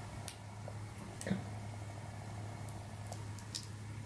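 Faint small clicks and scrapes of a plastic pry tool working at a thermal sensor glued fast to a hard drive's metal casing, five or six separate clicks over a steady low hum.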